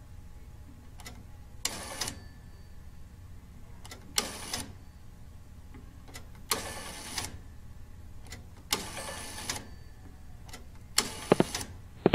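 Step-by-step (Strowger) telephone exchange selector switches clattering as the dialled call drives them. Five short bursts of rapid clicking come about two seconds apart over a steady low hum, with a few sharp clicks near the end.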